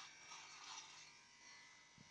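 Electric beard trimmer running with a faint, steady hum as it trims a beard.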